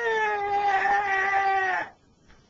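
A boy's voice holding one long, high, whining note, a drawn-out "yeah" that sinks a little in pitch and cuts off near the end.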